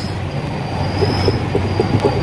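Willys Jeep mechanical diaphragm fuel pump worked by hand, giving a quick run of short pulses, about four a second, from about a second in. The pumping sound shows the pump still works.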